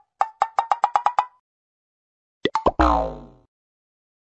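Cartoon pop sound effects: a quick run of about eight short pitched pops in just over a second, then two more pops and a brief sound that falls in pitch and fades.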